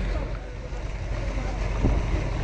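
Wind buffeting the microphone over a steady low rumble from the outboard motors of inflatable boats, their propellers churning the water.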